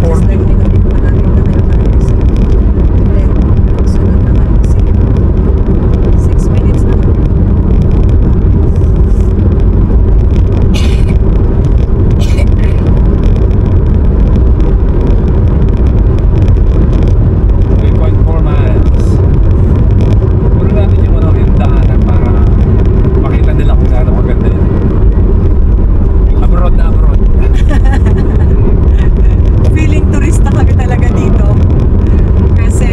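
Steady road and engine rumble inside a moving car cruising on a paved road, heavy in the low end, with two brief clicks near the middle.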